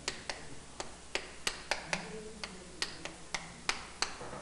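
Chalk tapping and scraping on a chalkboard as an equation is written: a dozen or so sharp, irregular taps as each number and sign goes down.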